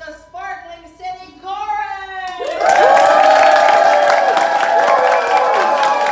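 A woman speaks briefly, then about two and a half seconds in an audience breaks into loud applause and cheering, with whoops over the clapping.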